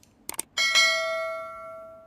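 Two quick mouse clicks, then a single bell ding that rings out and fades over about a second and a half: the sound effect of an animated subscribe button.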